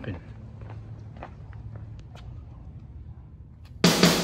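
Footsteps on a concrete driveway over a low steady rumble: a string of light, irregular steps. Loud rock music comes in near the end.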